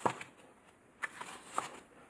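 Loose paper planner pages being turned and handled by hand: a soft paper rustle at the start, a quiet moment, then light rustling and a small tap from about a second in.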